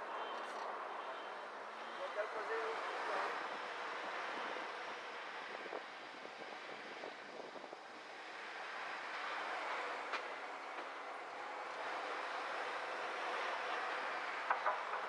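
Steady city traffic and road noise heard from a car driving slowly through city streets, with a few faint clicks.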